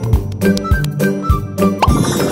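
Instrumental intro of a children's song: a bouncy tune over a steady beat of about two drum hits a second, with a quick rising cartoon sound effect near the end.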